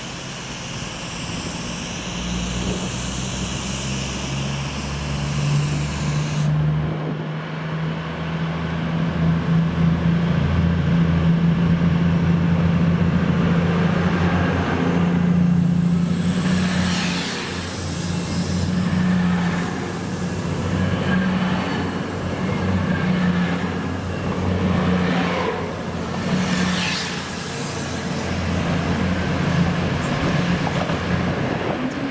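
Diesel train at a station platform, its engine running with a steady low drone that grows louder from about eight seconds in. From about two-thirds of the way through, a thin high whine sits over it.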